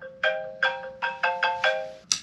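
A phone alarm tone playing a repeating tune of bright, marimba-like notes.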